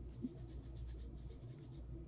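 Faint scratchy rubbing of coloured sand being worked by hand on a surface, a run of light quick scratches over a low room hum.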